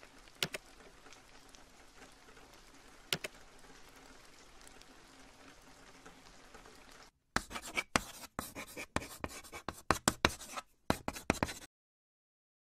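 Faint steady rain with two soft clicks. About seven seconds in it cuts out, and a run of sharp scratching and clicking sound effects from the channel's outro logo animation follows for about four seconds, then stops abruptly.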